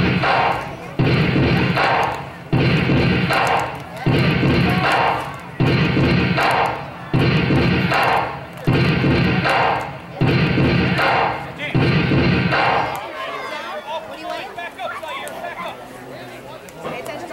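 Voices chanting a sideline cheer in unison on a steady beat, one loud call about every one and a half seconds, nine times, stopping about 13 seconds in.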